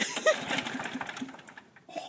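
Recoil starter of a Craftsman push lawn mower yanked, the engine turning over with a fast rattle that fades after about a second and a half without catching.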